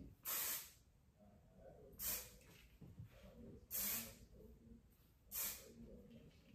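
Aerosol hairspray can sprayed in four short hissing bursts, each about half a second long and spaced under two seconds apart, as it is misted over the hair.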